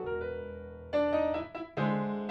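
Grand piano playing a tango. A held chord dies away, then a loud chord is struck about a second in, and after a brief break another chord with a low bass note comes in near the end.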